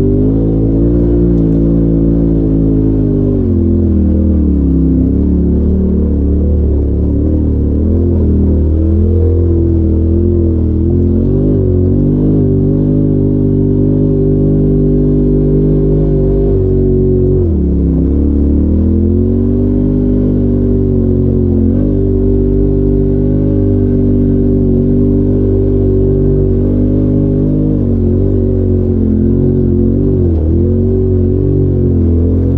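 Polaris RZR side-by-side engine running under load while the machine crawls a rough trail. The engine note drops and climbs back up as the throttle is eased off and reapplied: about four seconds in, around eighteen seconds in, and again at the very end.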